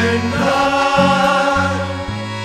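Men's choir singing a hymn in held chords, with accordion accompaniment keeping a steady bass pattern that changes about twice a second.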